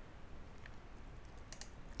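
Faint computer mouse clicks, a couple of them near the end, over low room hiss.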